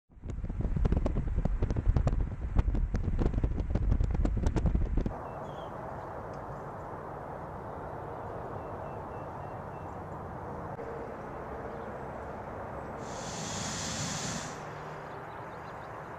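Wind buffeting the microphone in loud crackling gusts with heavy rumble, stopping suddenly about five seconds in. A steady, quieter outdoor background hiss follows, with a brief high hiss near the end.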